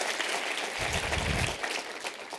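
Large audience applauding, the clapping thinning out near the end.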